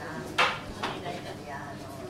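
Tableware clinking at the table: one sharp clink of chopsticks or dishes, then a softer one about half a second later.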